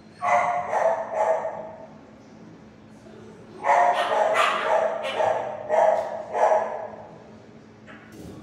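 Shelter dog barking in two runs: about three barks, a pause of about two seconds, then a quicker string of about eight barks.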